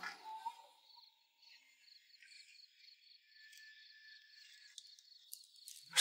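Faint, steady, high-pitched pulsing trill of crickets in the background ambience, with a few soft clicks about five seconds in.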